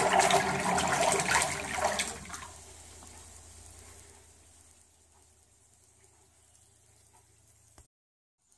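Electric trolling motor running in a water-filled tub, its propeller churning the water; the churning fades away between about two and four seconds in as the speed is turned down on its PWM controller. A faint low hum stays on afterwards, and there is a small click near the end.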